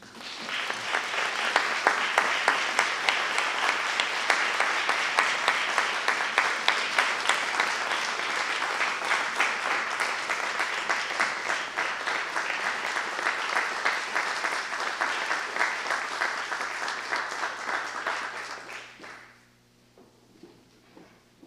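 Audience applauding: dense, steady clapping that swells in within the first second, holds, and dies away about nineteen seconds in.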